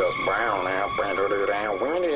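A voice, with rising and falling pitch, and almost no bass or drums behind it.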